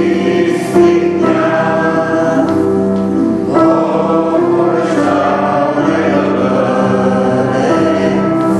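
Choir singing slow, long held chords in a religious piece of music.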